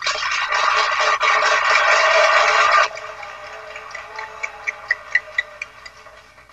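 Crowd applause in an old speech recording, loud and dense for about three seconds, then suddenly dropping to a thinner patter of scattered claps that dies away.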